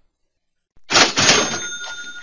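Cash register "ka-ching" sound effect: a sudden rattling clatter of the drawer and mechanism with a bell ringing over it, starting about a second in.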